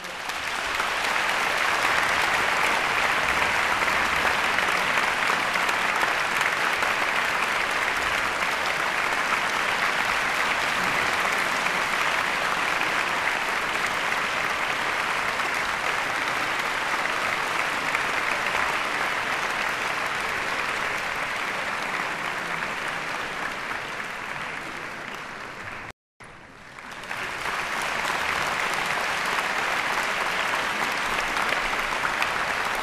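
Concert-hall audience applauding, starting all at once and holding steady. The sound cuts out completely for an instant about 26 seconds in, then the applause resumes.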